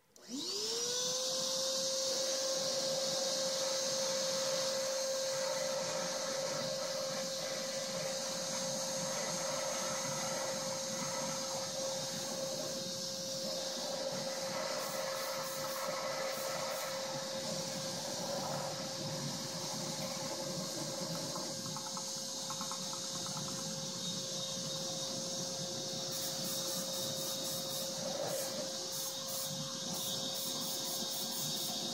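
Shop vacuum (wet/dry vac) switched on, its motor spinning up within half a second to a steady high whine with a hiss of air, held running throughout. Its hose is used to blow air into a handmade jet engine's intake. Faint rapid ticking comes in near the end.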